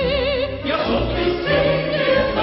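Operetta singing with orchestra: a soprano holds a note with wide vibrato, then a little over half a second in a fuller passage with chorus and orchestra takes over.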